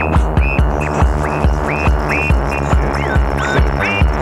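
Techno DJ mix: a steady kick drum at about two and a half beats a second under dense droning bass tones, with a high synth line that glides up and down.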